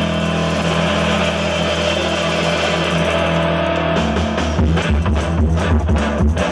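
Live rock band holding a sustained, ringing chord on electric guitar and bass; about four seconds in, the drum kit comes in with a steady beat.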